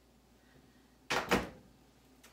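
Microwave door being shut: two quick knocks about a quarter second apart as it closes and latches.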